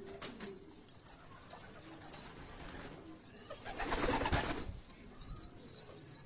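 Domestic pigeons cooing softly, with a louder burst of noise lasting about a second, about four seconds in.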